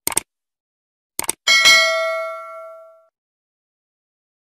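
Animation sound effects: two quick clicks, another pair of clicks a little over a second later, then a bell ding that rings out and fades over about a second and a half.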